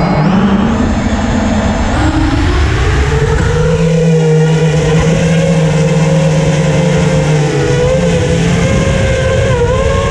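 Brushless motors and propellers of a Helix ZX5 5-inch FPV quadcopter, running on previously damaged props, heard through its onboard camera: a loud, steady whine whose pitch shifts with throttle. The pitch steps up about two seconds in as it lifts off.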